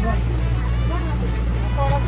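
Motorboat engine running under way with a steady low drone, people talking faintly over it.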